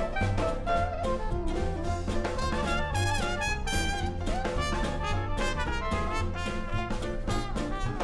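Jazz background music with a brass lead over a steady bass line.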